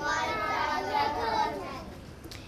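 A group of children's voices talking and calling out over one another, fading away near the end.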